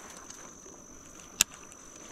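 A single sharp click from the fishing tackle during a cast, about one and a half seconds in, over a faint steady high-pitched insect drone.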